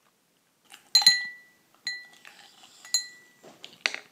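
Clear drinking glass clinked three times, about a second apart, each strike leaving a brief ringing tone. A short noise just before the end.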